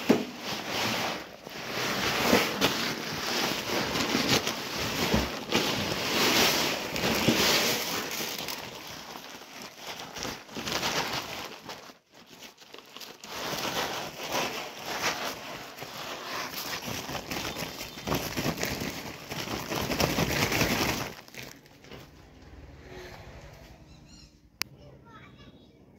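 Wheat grain poured from a crinkling plastic sack into a steel hopper: the sack rustles and crackles over the hiss of grain sliding in, in uneven surges. There is a brief break about halfway through, and the sound stops shortly before the end.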